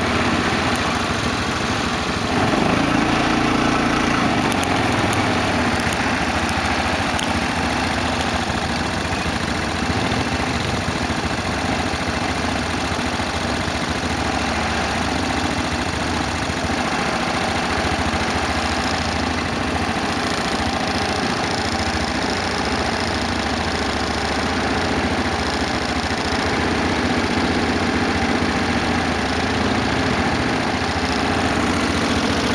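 Quad bike (ATV) engine idling steadily.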